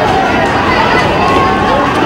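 Loud crowd noise from a street scuffle between protesters and police: many voices shouting at once over the commotion of a jostling crowd.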